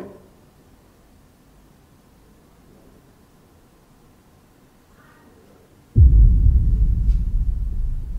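Faint room tone in a quiet corridor, then about six seconds in a sudden loud, deep rumble that slowly fades.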